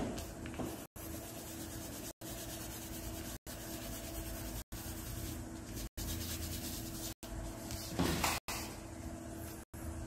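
Pencil rubbing on paper as a drawing is coloured in, over a faint steady hum, with a brief louder rustle about eight seconds in. The sound cuts out for a moment about every second and a quarter.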